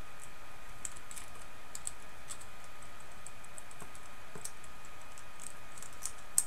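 Small, irregular metallic clicks of pliers pinching and flattening the sharp cut end of braided picture-hanging wire against its coil.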